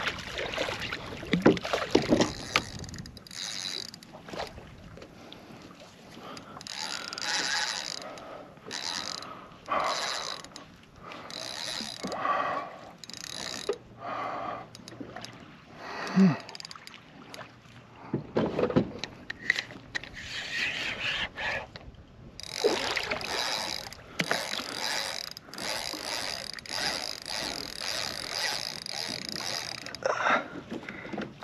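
Spinning reel buzzing in spurts as a hooked tarpon takes line against the drag, running almost without a break over the last few seconds. Water splashes near the start as the fish thrashes at the surface.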